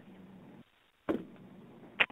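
Faint background hiss of a conference-call line, cutting to dead silence for a moment, with a brief short noise about a second in.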